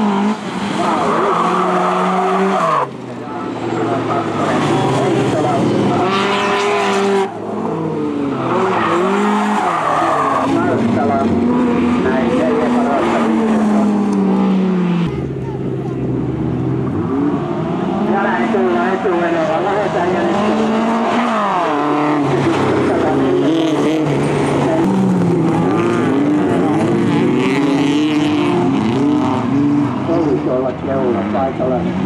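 Several folkrace cars racing on a loose gravel track, their engines revving up and down in pitch as they accelerate and lift through the corners, with tyre noise on the loose surface. The sound breaks off abruptly a few times.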